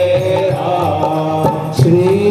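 Devotional chanting sung over a steady, sustained musical accompaniment. Near the end it breaks off abruptly into a different passage.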